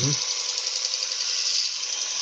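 Steady, high-pitched grinding hiss that starts abruptly just before: a woodturning gouge, its edge damaged by a hidden nail, being ground on a grinding wheel.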